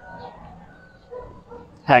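Faint dog calls: a few short, thin tones in a quiet pause, with a man's voice starting again just before the end.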